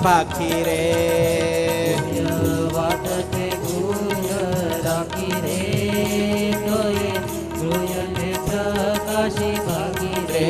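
Instrumental interlude in a devotional kirtan: harmonium and bamboo flute play the melody over a steady tabla rhythm.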